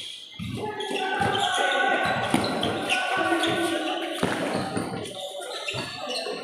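A basketball bouncing on a concrete court in a pickup game, with players' voices calling out over the thuds of the ball and feet. One sharp loud knock comes about two and a half seconds in.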